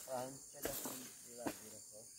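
Steady, high-pitched insect chorus, like crickets, with faint voices briefly heard behind it.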